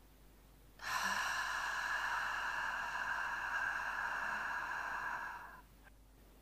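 A slow, controlled human exhalation in a breathing exercise: one steady breathy hiss of about four and a half seconds that begins about a second in and fades out near the end.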